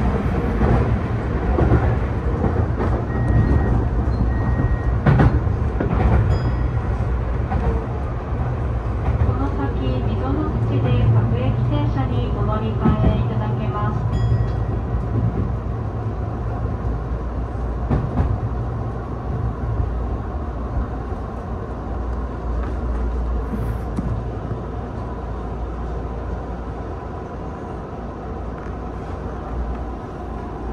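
Tokyu new 5000 series electric train running, heard from just behind the driver's cab: a steady rumble of wheels on rail and the running gear, louder in the first half and easing off through the second half.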